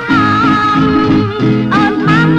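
Cambodian pop song played from a cassette: a high lead line holds one wavering note for over a second, over a band with repeated bass notes, and a new phrase comes in near the end.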